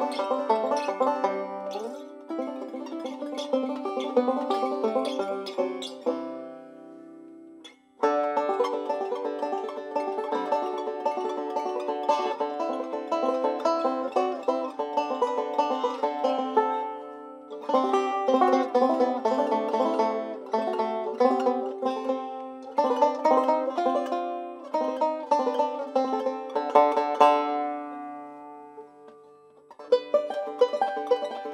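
Five-string banjo playing a fast picked tune. The picking stops for about two seconds around six seconds in while the last notes ring out, then resumes, and dies away again near the end.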